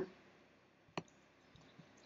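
A single computer mouse click about a second in, with only faint room tone around it.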